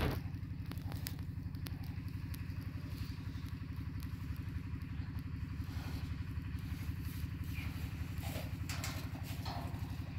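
Bear humming with its mouth to its paw: a steady low drone of fast, even pulses, like a small engine idling. There are brief rustles near the end.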